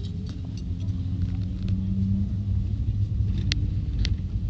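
Pickup truck driving on a dirt road, heard from inside the cab: a steady low rumble of engine and tyres, with a sharp click about three and a half seconds in.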